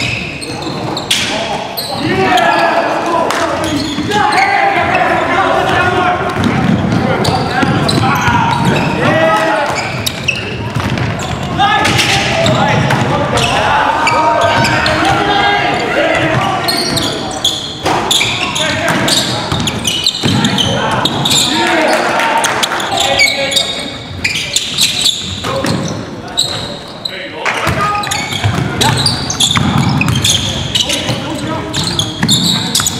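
Live sound of a basketball game in a gym: a basketball bouncing on the hardwood floor, with players' voices calling out on the court.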